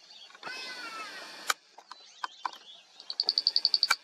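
Outdoor bush ambience with birds calling: a drawn-out call falling slightly in pitch in the first second or so, then a rapid high trill of about a dozen notes near the end.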